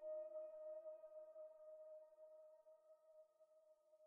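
A held note or chord of soft background music fading out to near silence.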